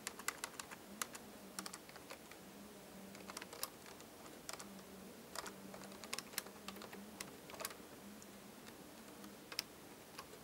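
Computer keyboard being typed on: faint, irregular keystroke clicks in short runs with pauses between them.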